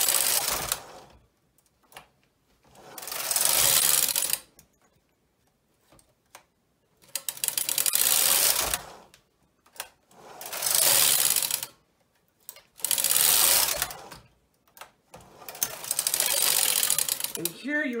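Brother 260 double-bed knitting machine: the main carriage and ribber carriage slide across the needle beds in about six passes, each a rasping sweep of one to two seconds with pauses and small clicks between, knitting short rows.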